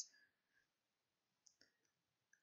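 Near silence with a few faint, short clicks about a second and a half in, from a computer mouse as the page is scrolled.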